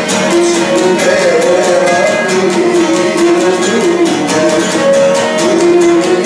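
Cretan lyra bowing a sustained melody over a laouto strummed in a steady, even rhythm: a Cretan syrtos dance tune.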